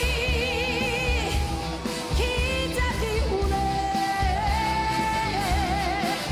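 A woman singing a Korean pop song over a full band with a steady bass beat, holding long notes with wide vibrato, near the start and again near the end.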